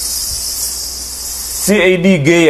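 A steady, high-pitched hissing buzz that cuts off suddenly about one and a half seconds in, after which a voice starts speaking near the end.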